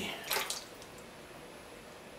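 A brief wet scrape of a potter's tool against soft clay at the foot of a freshly thrown jar on the wheel, about half a second in, then only a low steady hush.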